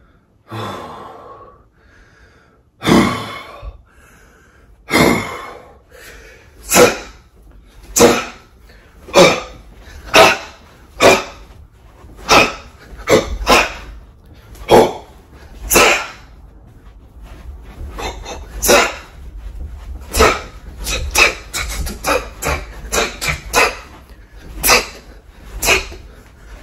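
Sharp, forceful exhalations, one with each hook thrown while shadowboxing: about one a second at first, then coming faster in quick runs of two or three near the end.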